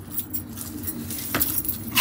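Metal chain necklace jangling as the wearer dances and jumps, with a couple of sharp knocks in the second half over a steady low rumble.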